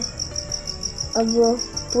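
An insect trilling steadily: a high, evenly pulsed note at about ten pulses a second, running without a break.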